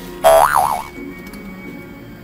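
A cartoon boing sound effect about a quarter second in, lasting about half a second, its pitch wobbling up and down, over faint background music.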